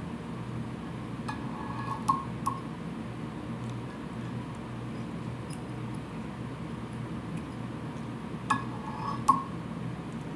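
Small metal fly-tying tools, the whip-finish tool and bobbin holder, giving faint light clinks while the thread head of a fly is whip-finished: a few between one and three seconds in and another few near the end. A steady low hum runs underneath.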